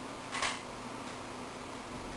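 A single brief rustle of paper, about half a second in, as the pattern is handled, over a steady faint hiss and hum.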